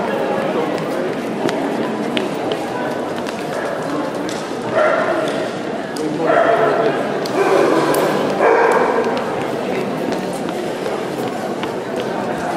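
A dog barking four times in quick succession about halfway through, each call under a second long, over steady crowd chatter.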